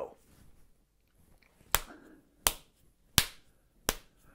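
Hands beating out a steady count-in: four sharp, even clicks about 0.7 s apart, setting the rhythm just before the singing starts.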